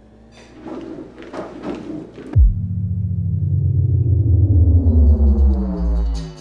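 Film soundtrack: a light clatter for about two seconds, then a sudden deep boom that swells into a loud, sustained low synth tone whose upper overtones rise steadily, a cinematic riser.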